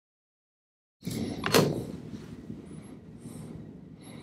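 Dead silence for about a second, then handling sounds as a tulle fabric print studded with small 3D-printed plastic dots is lifted off the printer's build plate: one sharp click or scrape about half a second after the sound starts, then faint, uneven rustling.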